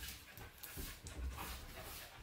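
A dog panting.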